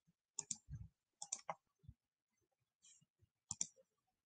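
Faint computer mouse clicks on a video-call microphone: three quick double clicks spread across a few seconds, with a soft low thump just under a second in.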